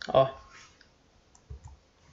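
Keystrokes on a computer keyboard: a click at the very start, then a few faint clicks and a soft low thump about a second and a half in.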